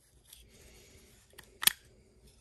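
Quiet handling of a folding knife's small steel parts as the liner is separated from the frame, with a faint tick and then a sharp click near the end.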